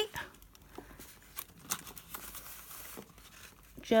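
Paper pages of a handmade junk journal rustling and crinkling softly as they are handled and leafed through, with a few light taps.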